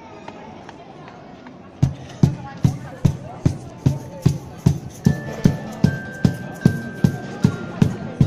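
Cajón struck in a steady beat, about two and a half strokes a second, starting about two seconds in after a moment of street crowd murmur. A higher held melody line joins the beat about five seconds in as the band's song gets under way.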